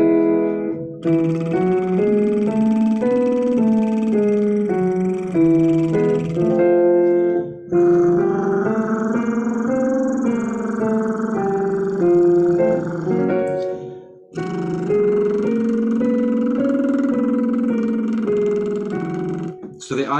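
Electric piano playing a vocal warm-up exercise: short patterns of notes moving step by step over held chords. It comes in four phrases with brief breaks between them.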